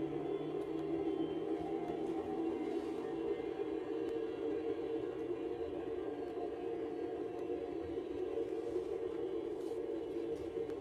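A steady, dense drone with echo, held at one pitch without a beat; a deeper hum underneath fades out about three seconds in.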